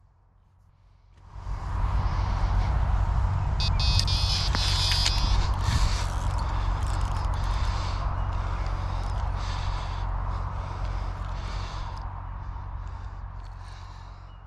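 A carp run on a method feeder rod: line strips off the reel's engaged baitrunner with a loud, steady whirring that starts suddenly about a second in. A high electronic bite-alarm tone sounds briefly near the middle, and the noise eases off gradually as the fish is hooked and played.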